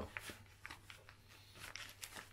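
Faint crinkling and small ticks of a clear resealable plastic bag (a LOKSAK) being handled as a small first aid pouch is fitted into it.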